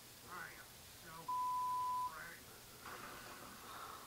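Cartoon dialogue from a television, with one steady, loud censor bleep of just under a second covering a word partway through, recorded off the TV's speakers.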